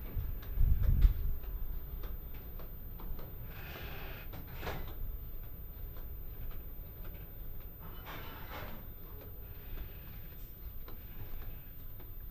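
Quiet ship-interior room tone: a low steady rumble, with a heavy low thud about a second in and a few faint, brief soft sounds later on.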